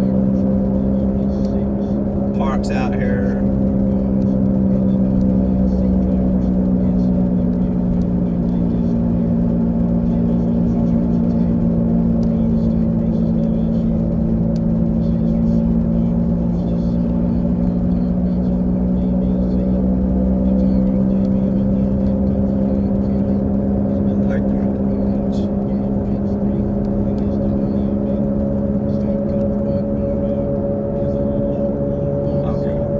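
Steady engine drone of a car cruising, heard from inside the cabin and holding nearly one pitch, with a slight rise near the end.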